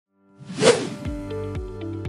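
A whoosh sound effect swells and fades about half a second in. Background music with a steady beat, about two beats a second, starts about a second in.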